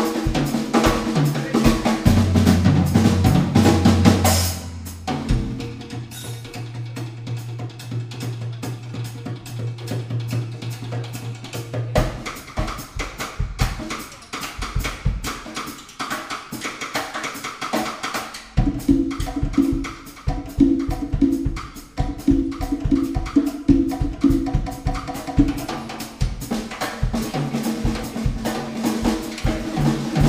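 Live band playing with a drum kit. The ensemble is full for the first few seconds, thins to a long held low bass note under lighter percussion, and from just past the middle the drum kit drives a steady groove.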